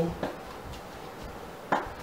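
Hand screwdriver driving a screw through a metal microwave mounting plate into the wall: a few faint clicks, then a short louder sound near the end.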